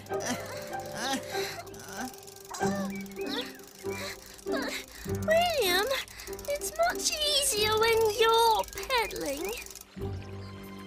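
Cartoon soundtrack: wavering character voices with no clear words, strongest in the second half, over background music.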